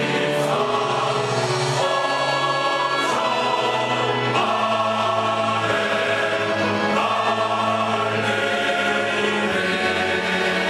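Large choir, mostly men's voices, singing sustained chords that change every second or so.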